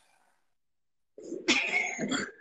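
Dead silence for about a second, then a short, forceful vocal sound from a person, loud from its onset.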